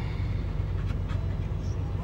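Semi-truck's diesel engine idling steadily, a low rumble heard inside the Kenworth's cab, with a dog panting close by.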